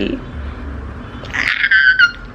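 A woman's brief, high-pitched squeal of delight near the end.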